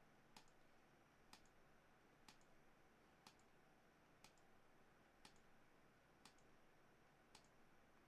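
Faint computer mouse button clicks, about one a second, eight in all, over near silence.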